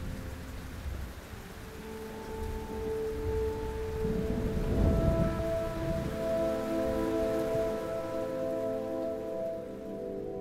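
Steady rain with a low rumble of thunder about halfway through, over held, sustained music notes. The rain fades away near the end, leaving the music.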